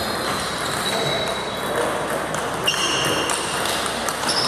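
Table tennis balls clicking off bats and tables, with sharp pings that ring on briefly, about 2.7 s in and again near the end, over the chatter and echo of a sports hall where several tables are in play.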